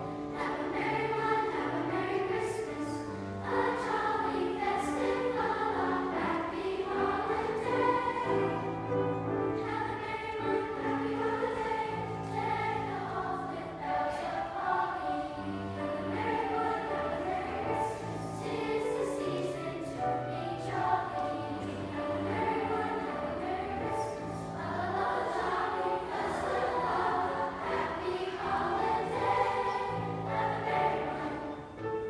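Middle school choir of girls' and boys' voices singing a song together, under a conductor.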